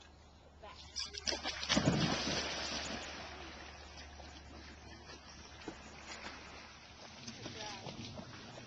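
A black retriever plunges off a rock into a pond. The big splash starts about a second in and is loudest at about two seconds, then fades into the steady swish of water as the dog swims out.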